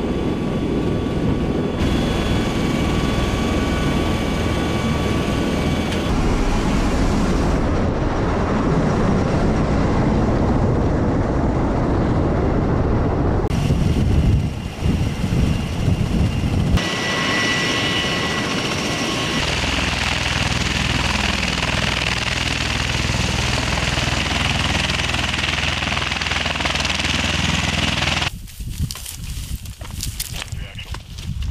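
MV-22 Osprey tiltrotor running: a loud, steady drone of engines and rotors, heard first from inside the cargo cabin with a high whine over it, then from outside with the rotors turning while it sits on the ground. The sound changes abruptly several times, and near the end it drops to a much quieter outdoor background.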